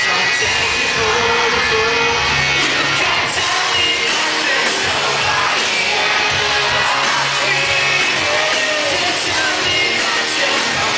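Pop-punk band playing live and loud, with singing over the full band, recorded from inside the crowd.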